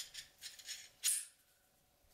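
Steel knife guard slid along the tang and pulled off, giving a few short, sharp metallic scrapes and clinks, the loudest about a second in.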